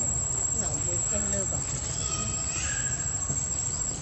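A steady high-pitched insect drone runs throughout over a constant low rumble, with faint murmured voices in the background.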